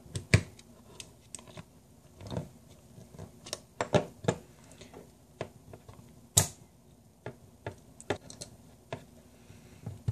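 Small screwdriver prying at a revolver's side plate: irregular light metal clicks and taps, with a few sharper clicks among them.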